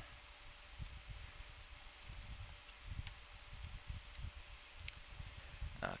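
Faint, scattered computer mouse clicks, a few sharp ticks spread irregularly through the quiet, over a faint steady hum.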